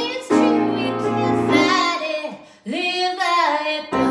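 A woman singing to her own grand piano accompaniment, chords under a melodic vocal line. About two and a half seconds in the piano drops away and she holds one long sung note.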